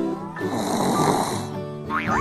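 Background music with a comic snoring sound effect in the middle.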